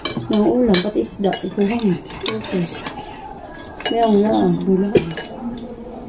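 Spoons and forks clinking and scraping on ceramic plates and bowls during a meal, a scatter of short sharp clinks. Voices talk briefly twice in between, louder than the clinks.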